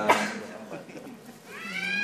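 A man's voice through a microphone, pausing mid-sentence: a short hesitant sound at the start, then a drawn-out filler that rises in pitch and holds before he speaks again.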